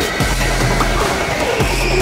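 Background music with a heavy, steady bass line.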